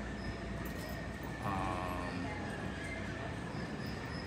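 Steady background hum of an airport terminal heard from behind the window glass, with a faint high whine running through it and a short, distant voice about one and a half seconds in.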